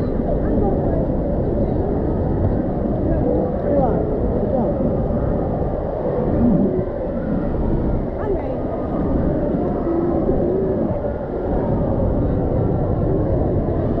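Steady rush of running and splashing water in an indoor waterpark's kids' pool, with scattered children's voices in the background.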